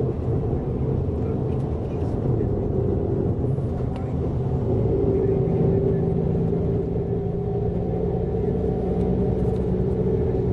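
Coach bus driving, heard from inside the passenger cabin: a steady engine hum over road rumble.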